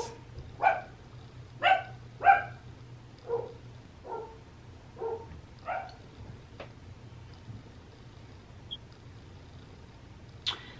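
Pet dogs barking: about eight short barks spread over six seconds, the loudest in the first two and a half seconds, then dying out.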